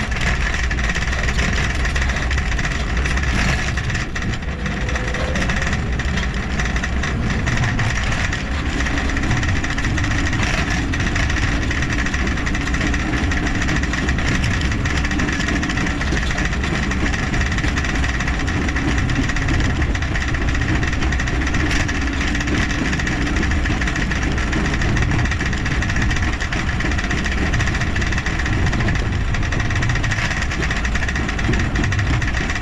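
Steady rumbling wind and rolling noise on a camera mounted on a trike in motion, with a constant hum running through it.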